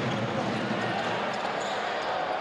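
Basketball being dribbled on a hardwood court over a steady din of arena crowd noise.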